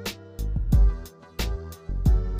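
Boom bap hip hop instrumental beat: a kick drum with deep bass, a snare on the backbeat about every second and a third, and hi-hats over a sustained melodic sample.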